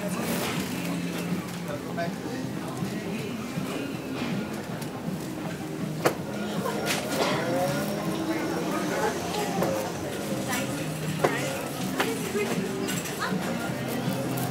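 Indistinct women's voices and laughter over background music, with a sharp click about six seconds in and another about eleven seconds in.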